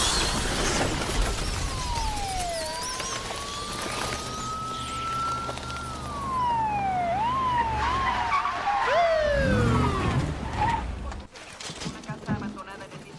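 Police car sirens: a slow wail that rises and falls, then fast yelping from more than one siren, over the steady low running of car engines. The sound drops away suddenly about a second before the end.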